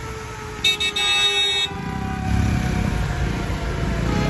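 A vehicle horn honks once for about a second, starting just under a second in, in busy street traffic. Motorcycle and scooter engines run and grow louder after the honk. A faint tone slowly falling in pitch runs underneath.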